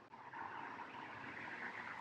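Faint steady background noise, a soft even hiss that comes up about a quarter second in and holds.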